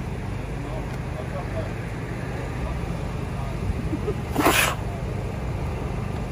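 Steady low background rumble of a car park, with one short, sharp burst of noise about four and a half seconds in.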